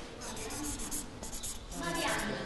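Writing on a board: a quick run of short, scratchy strokes.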